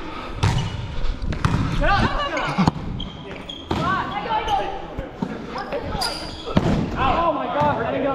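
Players' voices calling out in an echoing gymnasium, with several sharp smacks of a volleyball being hit and striking the hardwood court during a rally.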